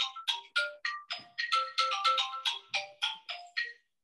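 Phone ringtone playing a quick melody of short, clear notes, about four a second, which stops just before the end.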